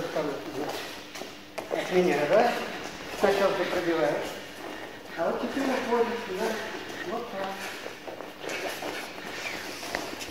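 A man's voice counting out a boxing drill cadence ("и два, и два"), with footsteps shuffling on the ring mat and a couple of sharp slaps, about a second and a half and three seconds in, of punches landing on open palms.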